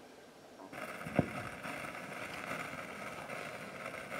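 A stylus set down on a spinning 78 rpm shellac record. The hiss and crackle of surface noise starts suddenly just under a second in, with a single thump a moment later, and then runs on steadily through the lead-in groove.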